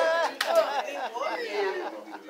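Speech only: voices talking, trailing off near the end.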